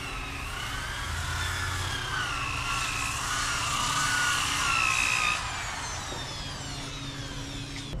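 Power sander working the bare aluminium mast of a sailboat: a steady sanding hiss with a motor whine that wavers in pitch as the pressure changes. The whine stops about five seconds in, and a few faint falling tones follow.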